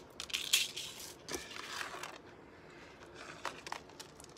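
Light crinkling and rustling of plastic and paper packaging as a necklace is handled, with short rustles in the first two seconds and a couple of small clicks later.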